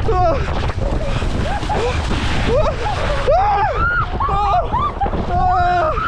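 People running and wading into icy lake water, splashing through the shallows, with repeated shrieks and yelps at the cold. Heavy wind rumble on the microphone runs underneath.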